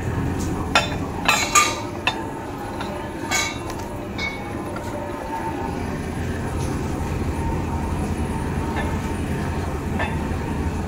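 Metal ring moulds clinking and knocking as they are handled and set down on the bench: several sharp clinks in the first two seconds and a few softer ones a little later, over a steady low machine rumble.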